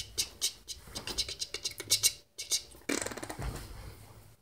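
A run of quick, sharp clicks for about two seconds, then a thump and rustling about three seconds in as a person falls backward onto the floor.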